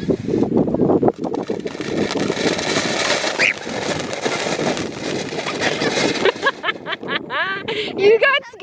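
Ground fountain firework spraying sparks, a loud steady hissing with crackle that fades out about six seconds in. A voice follows near the end.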